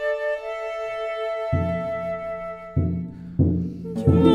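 Chamber ensemble introduction: long held flute and violin notes, joined about a second and a half in by three low drum strokes, the last two close together.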